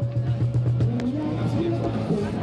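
Open-air stage ambience: a steady low hum with people's voices talking over it from about a second in, and a few sharp clicks.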